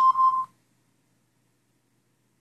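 Samsung Android phone's QR-code scanner app giving one short electronic beep, about half a second long, as it reads the code: the confirmation of a successful scan.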